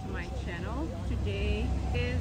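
A woman speaking, over a steady low rumble that grows slightly louder in the second second.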